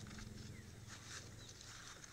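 Faint rustling and light scratching of fresh coconut leaf strips being tucked and woven by hand, over a faint low steady hum.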